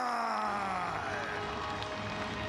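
Ring announcer's drawn-out shout of the winner's name, one long final syllable falling in pitch and trailing off, over a cheering arena crowd.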